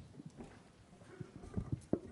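A few soft, irregular knocks and low bumps: handling noise as a speaker settles in to talk.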